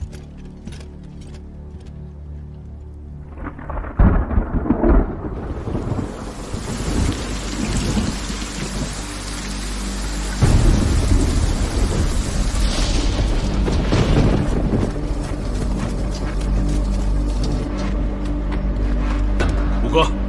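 A thunderstorm: a sharp crack of thunder about four seconds in, then heavy rain pouring steadily, with a deep rumble of thunder growing under it from about halfway through.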